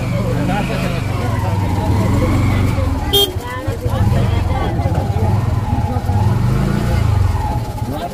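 People talking at a market stall over a steady low rumble, with a sharp click about three seconds in.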